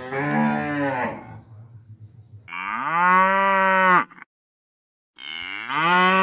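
Cow mooing: one call tails off about a second in, a long loud moo runs from about two and a half to four seconds, and another moo starts about five seconds in after a short silence.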